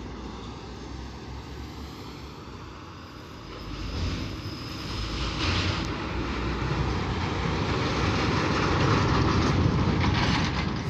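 MAN TGS 33.440 truck's diesel engine running as the loaded container truck approaches and drives past. It grows steadily louder from about three and a half seconds in, loudest near the end.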